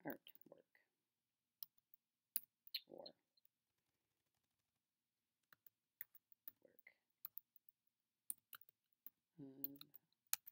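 Computer keyboard being typed on in short, irregular runs of key clicks, with a pause of about two seconds midway.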